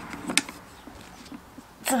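A single sharp plastic click from the carrying handle of a portable power station as it is gripped and raised, followed by quieter handling.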